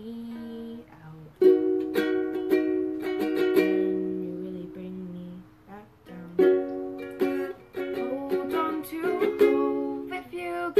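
Ukulele strummed in chords, about two strokes a second, with a girl's voice singing along over it. The strumming starts about a second in and pauses briefly about six seconds in.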